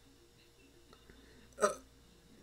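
One brief vocal sound from a person about one and a half seconds in; otherwise near silence.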